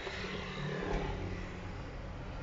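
Steady low vehicle rumble heard from inside a stopped car's cabin.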